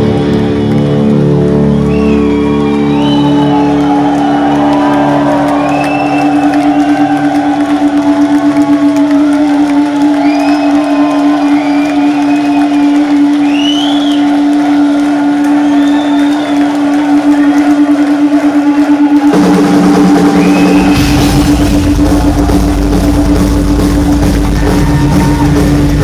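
Live heavy metal band on stage: one guitar note is held and rings with a steady pulse while the crowd cheers and whoops, then about 19 seconds in the band comes back in, with drums and bass driving hard from about 21 seconds.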